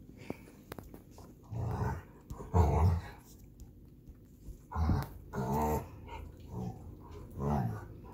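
Dog growling in about six short bouts, the loudest about two and a half seconds in.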